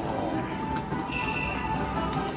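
Slot machine's electronic game music and chiming tones during a spin, with a new high tone coming in about a second in, over casino background noise.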